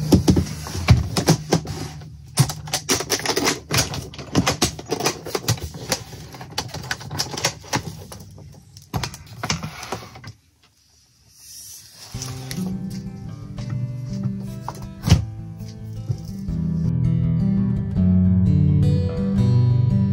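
A rapid run of clicks and knocks from a hard-shell guitar case being opened and handled, then, after a brief pause, an Ovation Balladeer acoustic-electric guitar being played, ringing chords and notes.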